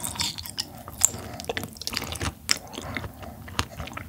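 Close-miked chewing and mouth sounds of a person eating yellow stingray liver, with many irregular sharp clicks.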